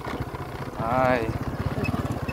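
Engine of a small farm vehicle carrying the riders, running with a rapid, even chug. A brief wavering voice sounds about a second in.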